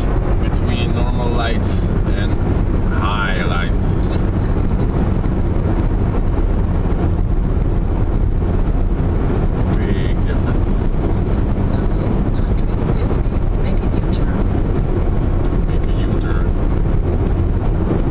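Steady low road and engine rumble inside the cabin of a moving Honda Insight hybrid, with no change in level.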